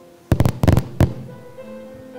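Soft piano accompaniment with sustained notes, cut into about a third of a second in by a rapid cluster of loud pops lasting under a second, the last one standing a little apart from the rest.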